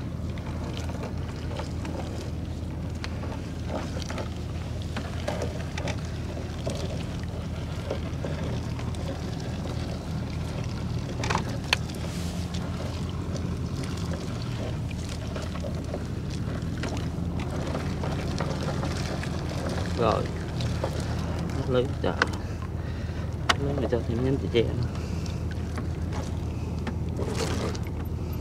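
A gill net being hauled by hand into a small wooden boat, water splashing and dripping off the wet mesh, over the steady low hum of an idling boat engine. A few sharp knocks come about halfway and again near the end.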